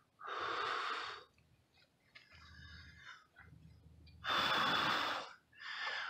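A person blowing long breaths into a smoking tinder bundle to bring a friction-fire ember to flame: four blows with pauses between, the third the longest and loudest.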